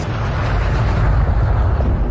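Boeing 747 jet engines at takeoff power: a steady, deep rumbling rush of noise that grows a little louder.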